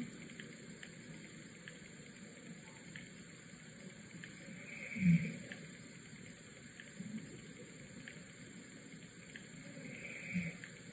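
Steady low hiss with scattered faint ticks, broken about five seconds in by a brief muffled murmur like a closed-mouth 'mm-hmm', with a fainter one near seven seconds.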